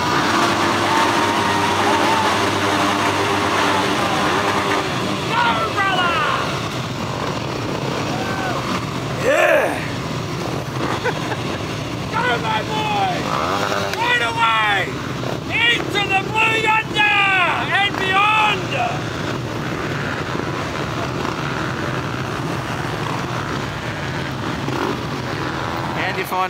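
A large pack of Yamaha WR250R dirt bikes, 250 cc single-cylinder four-strokes, running and being revved together, the engine notes rising and falling; the revving swells most from about twelve to nineteen seconds in.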